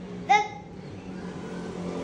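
A child's short, high-pitched vocal sound about a third of a second in, over a steady low hum.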